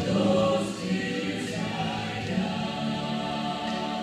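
A trio of women singing a sacred song together, moving into long held notes in the second half.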